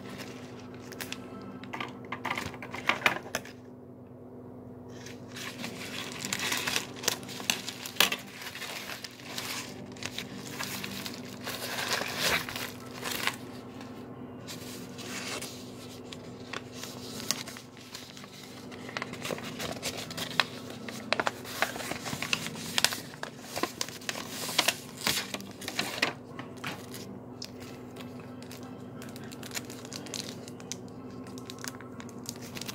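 A paper shipping envelope and its paper wrapping being torn open and handled: irregular tearing and crinkling in bursts, with short pauses, over a steady low hum.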